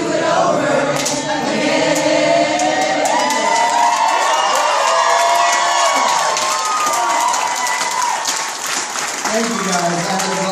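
Many voices of an audience singing together without instruments, with cheers and claps scattered through it.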